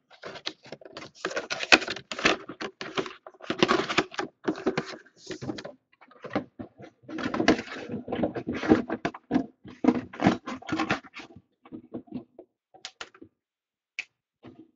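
Cardboard box and plastic packaging being handled: irregular rustling, crinkling and small knocks, thinning out to a few scattered clicks near the end.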